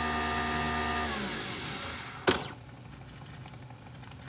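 An electric motor in a household appliance running with a steady hum, then winding down and stopping about a second in, followed by a single sharp knock.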